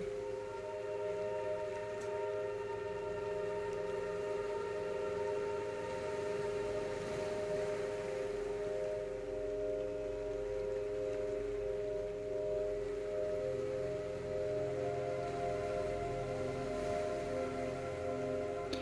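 Meditative ambient sound music: a steady drone of several layered, held tones, with softer lower tones fading in and out over it.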